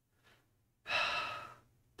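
A man's single audible breath, starting about a second in and lasting under a second, taken in a pause between sentences.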